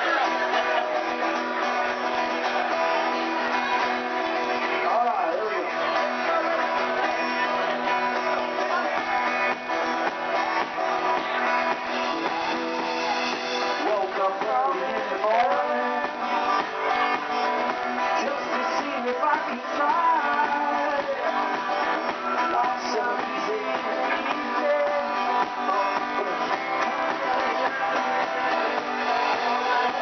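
Small live band playing a song, led by strummed acoustic guitars, at a steady level throughout.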